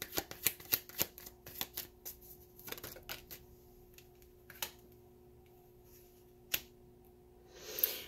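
A tarot deck being shuffled by hand: a quick run of light card clicks for the first two to three seconds, then a few single clicks as a card is drawn and laid down on the cloth.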